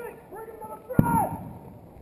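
Men's voices talking quietly, with a single sharp knock about a second in.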